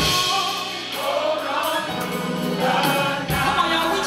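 Gospel choir singing, backed by a church band of organ, keyboard, bass and drums. Low bass tones return underneath the voices about a second and a half in.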